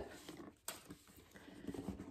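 Faint handling sounds of a cardboard gift box being opened, with one sharp tap about two-thirds of a second in.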